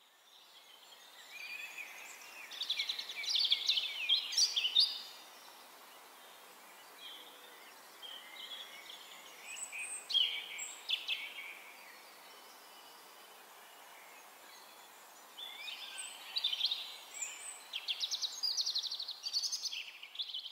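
Birds singing against a steady outdoor background hiss. Spells of quick chirps and trills come a couple of seconds in, again around ten seconds, and again near the end.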